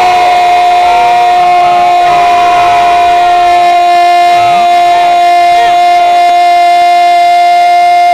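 A radio football commentator's long goal cry: a single loud 'gooool' held on one unbroken, steady note, announcing a goal just scored.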